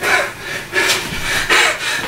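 A man's loud, breathy huffs of breath, several short bursts about half a second apart.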